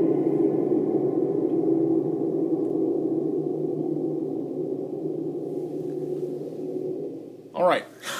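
Guitar ringing out through an Eventide Space pedal's Blackhole reverb: a long, dense reverb wash that slowly fades away over about seven seconds. A brief vocal sound comes near the end.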